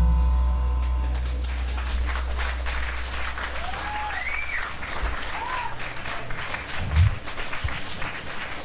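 The band's last chord rings out and fades over the first second or so, leaving a low amp hum. Then the audience applauds, with a couple of short rising-and-falling whistles in the middle.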